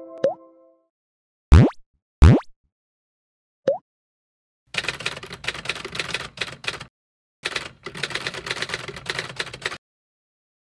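Editing sound effects: two quick, loud rising plop-like sweeps and a smaller rising blip, then a keyboard-typing effect in two runs of rapid clicks as text types out on screen.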